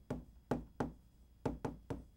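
Chalk tapping and clicking against a chalkboard as numbers and symbols are written: about six short, sharp taps at an uneven pace.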